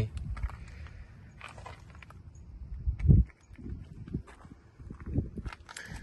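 Wind buffeting the microphone with a low rumble, with a few footsteps on gravel and a loud low thump about three seconds in.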